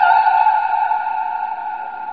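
The last high note of an opera-style song, held steady after its vibrato stops, with the accompaniment gone, slowly fading away.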